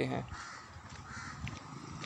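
A bird calling faintly twice, two short calls over a quiet outdoor background.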